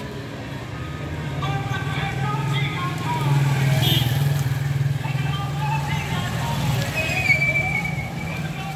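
A motor vehicle engine running close by, louder in the middle, with street noise and voices in the background.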